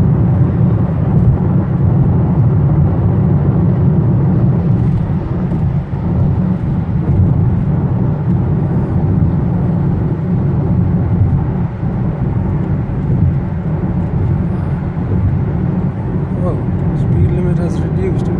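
Steady low rumble of a car's tyres and engine heard from inside the cabin while driving at freeway speed on a wet road.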